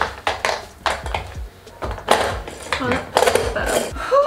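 Hand-powered mini vegetable chopper being worked in quick, irregular strokes, its blades whirring and chopping through vegetables in the bowl: a run of short noisy bursts, two or three a second.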